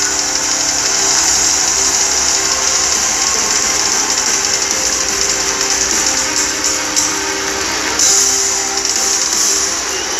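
Live heavy metal band playing: distorted guitars and drums under a loud, steady wash of cymbals, with chords held over it.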